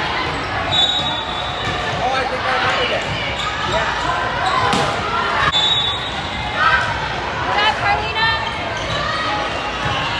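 Volleyball rally in a gymnasium: players calling and spectators talking throughout, with a sharp ball contact about halfway, all echoing in the hall.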